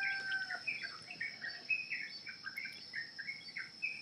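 Birds chirping in the background, short calls repeating every few tenths of a second, over a steady high-pitched whine.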